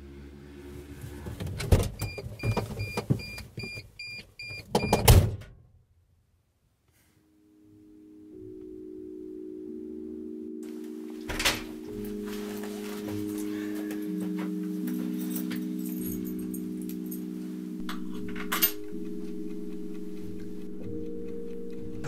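Knocks and thuds with a quick run of about eight short high electronic beeps, then, after a moment of silence, soft background music of long held chords.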